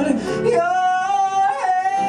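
A man singing a long, high held note over piano accompaniment, the note coming in about half a second in.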